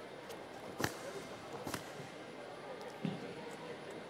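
Karate kata techniques on a tatami mat: three sharp hits about a second apart, crisp snaps of the karate gi and then a duller thud of a bare foot stamping, over a low hall murmur.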